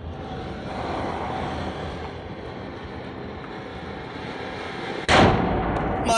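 Ganga Jamuna firecracker burning with a steady hiss of spraying sparks for about five seconds, then going off with one loud bang about five seconds in.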